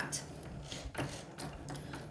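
Cricut Maker 3 cutting machine running as it cuts vinyl, a faint mechanical sound with a few light clicks.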